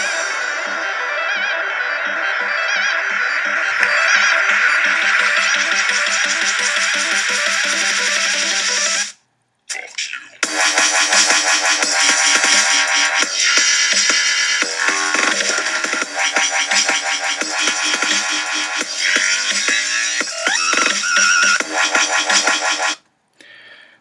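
A dubstep track playing back: a build-up that gets louder about four seconds in and cuts off near nine seconds. After a brief gap the drop comes in, with wobbling synth bass and drums. The music stops about a second before the end.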